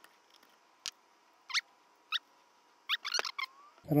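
A click, then four or five short, high squeaks as the small 8 mm nuts holding the back cover of a Denso alternator are broken free with a quarter-inch drive socket.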